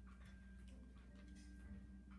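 Near silence: quiet room tone with a steady low hum and a few faint, irregular light clicks.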